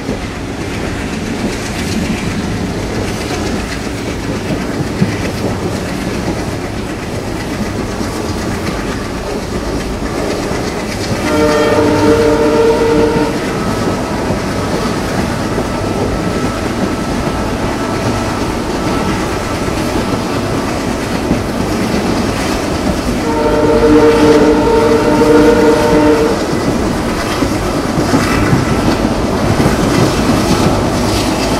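A passenger train running at speed, heard from an open coach window, its wheels clattering over the rails. The ALCO WDG3a diesel locomotive's horn sounds twice, a chord of several steady notes, about eleven seconds in for about two seconds and again about twenty-three seconds in for about three seconds.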